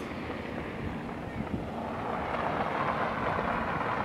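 Outdoor background noise: a steady rushing without any pitch that slowly grows louder.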